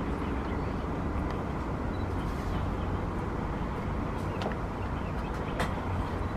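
Steady low rumble of distant road traffic, with a couple of faint ticks late on.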